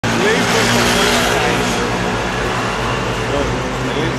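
Street ambience: a steady wash of road traffic with a vehicle engine running, and voices of people talking.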